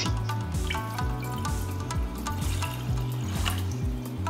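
Water poured from a plastic measuring jug into an empty saucepan, under steady background music.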